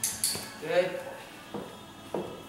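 Light, sharp metallic clinks: two in quick succession at the start and another about one and a half seconds in.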